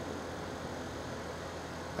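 Steady background hiss with a faint low hum, with no distinct sounds: room tone.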